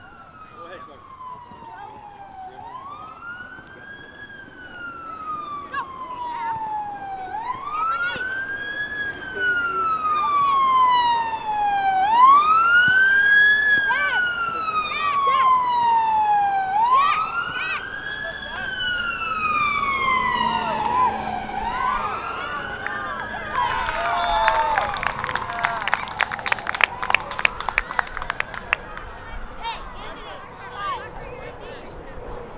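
Emergency-vehicle siren in wail mode: each cycle rises quickly and falls slowly over about four and a half seconds. It grows louder toward the middle, then fades. Near the end, a quick run of sharp clicks.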